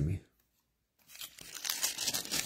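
Thin Bible pages rustling and crinkling as they are turned, starting about a second in.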